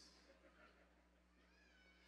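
Near silence: room tone between spoken phrases, with a faint, short, rising high-pitched sound about one and a half seconds in.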